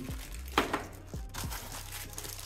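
Plastic packaging bags rustling and crinkling as parts are handled out of a foam tray, with one sharp crackle about half a second in and a couple of smaller ones after.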